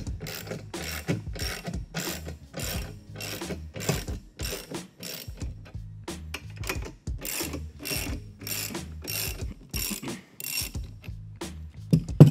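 Ratchet wrench clicking in a steady run of strokes, about two to three clicks a second, as it backs off the jack bolts of a flange spreader to release the spread.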